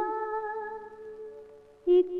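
Hindi film song: a woman's singing voice holds one long, steady note that fades away over about two seconds, and the next sung phrase starts just before the end.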